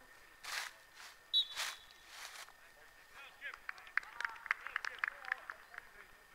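Outdoor football-pitch ambience: distant players shouting to each other in a quick run of short calls in the second half, after three brief bursts of noise in the first half.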